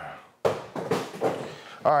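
A stool pulled up and sat on: a sudden scrape about half a second in that fades over roughly a second.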